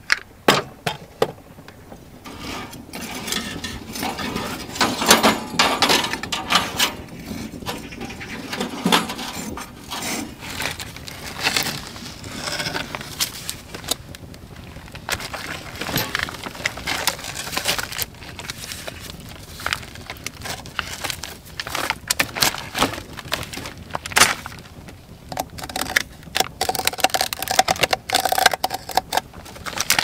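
Plastic wrapping crinkling and rustling as a shrink-wrapped bundle of compressed sawdust firewood logs is handled and opened, with light knocks and taps throughout.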